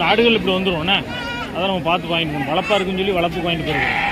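People talking, with a goat bleating among the voices.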